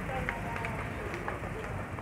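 Outdoor urban background noise with faint, indistinct chatter of passers-by.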